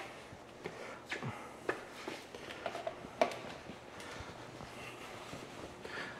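Quiet room tone in a large shop, with a few faint, scattered knocks and clicks in the first half, the light sounds of tools or steps.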